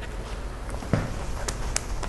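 Whiteboard cleaner sprayed onto the board from a trigger spray bottle: two short hisses in quick succession about a second and a half in, after a brief low knock.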